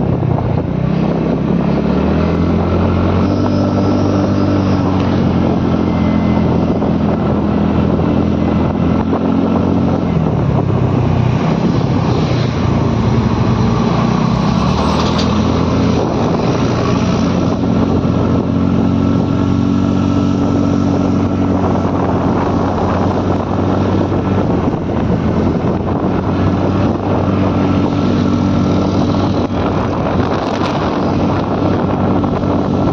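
Small scooter engine running while riding, its pitch rising and falling with the throttle, then holding fairly steady through the second half.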